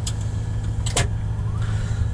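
Caterpillar 980M wheel loader's C13 diesel engine running with a steady low drone, heard from inside the cab. A sharp click comes about a second in.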